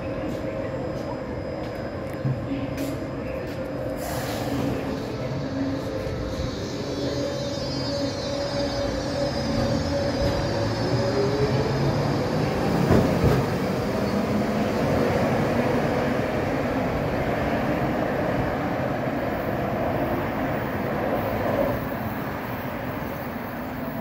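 Baltimore Metro subway train pulling out of the station. Its motors whine and rise in pitch as it speeds up, over a steady rumble of wheels and cars that is loudest about halfway through as the cars go past.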